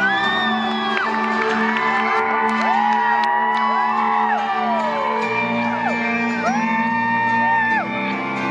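Festival crowd whooping and whistling, many high rising-and-falling calls, over steady sustained intro music as the band comes on stage.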